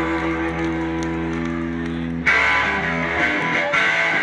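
Live rockabilly band on electric guitar, upright bass and drums. A held electric guitar chord rings steadily, then a little over halfway through the whole band comes in louder, with guitar strumming over bass and drum hits.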